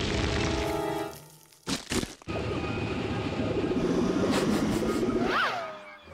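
Cartoon score with sound effects: held musical notes, then two sharp cracks about two seconds in, followed by a long dense noisy effect under the music and a brief whistle-like glide near the end.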